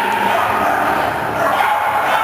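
A dog barking over the steady background noise and voices of a large hall.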